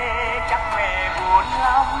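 A man singing a slow Vietnamese ballad over a backing track, holding wavering notes.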